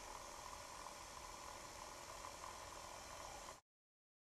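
Faint steady hiss of room noise, with no distinct sound in it, cutting off to complete silence about three and a half seconds in.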